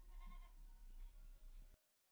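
Near silence: faint hum and room noise that cuts off to dead silence shortly before the end.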